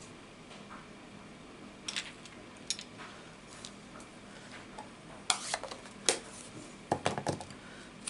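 A few light, short plastic clicks and knocks, spaced out over several seconds and closest together in the second half, as an acrylic stamp block and a plastic ink pad are handled and set down on a craft mat.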